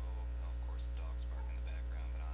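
Steady low electrical hum with a stack of even overtones above it, with faint, indistinct voices underneath.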